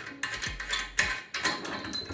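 Small metal clicks and rattles from the pop-up drain's pivot rod and ball-joint locking fitting behind a bathroom sink's chrome tailpiece as it is worked loose by hand.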